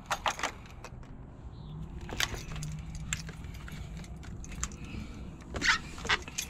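Keys jangling and a run of small clicks and knocks as someone settles into a car's driver seat, over a faint low hum in the middle, with a louder pair of knocks near the end.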